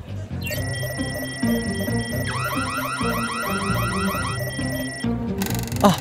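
Handheld metal detector wand sounding: a steady high electronic tone, joined about two seconds in by fast rising chirps, about six a second, over background music. A short whoosh comes near the end.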